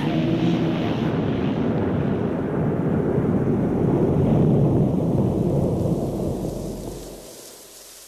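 Rolling thunder, a long low rumble that swells to its loudest about halfway and then dies away. A soft hiss of rain is left under it near the end.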